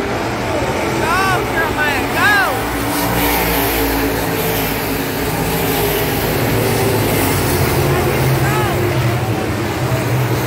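A pack of dirt-track sport mod race cars running hard around the track, their engines a steady, continuous roar. A high voice yells a few short calls about a second in and once more near the end.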